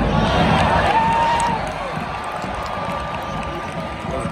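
Stadium crowd at a soccer match: a steady din of many voices, with raised shouts in the first two seconds that then ease off a little.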